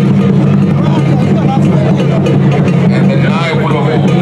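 Crowd of voices talking and calling over a loud, steady low hum.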